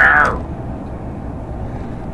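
Steady low rumble of a truck's engine running at idle, heard inside the cab, just after a brief voice sound at the very start.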